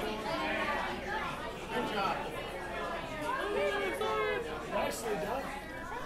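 Several people talking at once in a bar room: overlapping chatter of voices, with no music playing.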